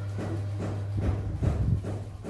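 A steady low electrical hum, with faint rustles and light knocks as a wire and a soldering iron are handled.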